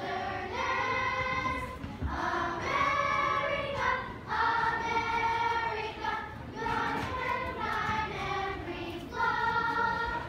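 A choir of boys and girls singing together in long held notes.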